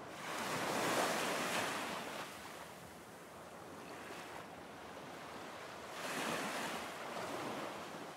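Ocean surf washing onto a shore: a wave breaks and swells about a second in, the water hisses more quietly for a few seconds, and a second wave comes in near the end.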